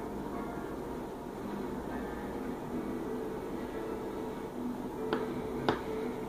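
Two sharp, short clicks about five seconds in, half a second apart, the second louder, over a steady room background with faint steady tones.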